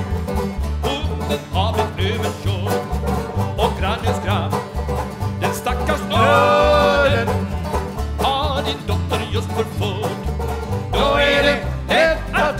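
Live country-style song led by a plucked banjo and two strummed acoustic guitars over a walking bass line. The voices come in with held notes about six seconds in and again near the end.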